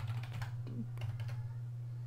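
Faint computer-keyboard typing, a run of light key clicks as a word is typed in, over a steady low hum.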